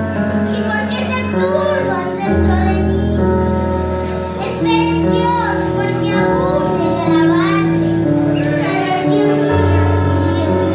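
A child singing a psalm to electronic keyboard accompaniment, with long held bass notes changing every few seconds under the melody.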